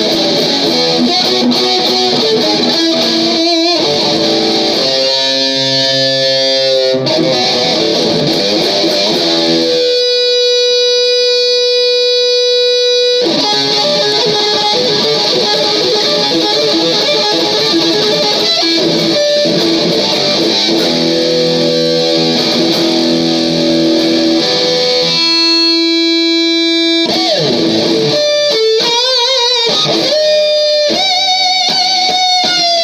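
Amplified electric guitar playing a solo line of single notes, some held for several seconds with wavering vibrato, one long held note near the middle, and pitch bends towards the end.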